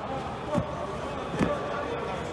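Two dull thuds, a little under a second apart, with a low boom after each, over the steady chatter of a crowd in a large sports hall.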